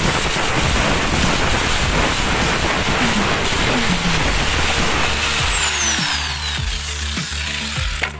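Angle grinder with an abrasive disc grinding and smoothing a repaired plastic part, its motor running with a high steady whine. About five and a half seconds in it is switched off, and the whine falls in pitch as the disc winds down.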